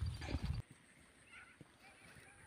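A few faint low knocks in the first half second, then near silence.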